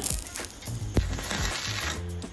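A welding arc struck across a steel coupon as a stray arc: a sparking hiss with a sharp snap about a second in. Background music plays underneath.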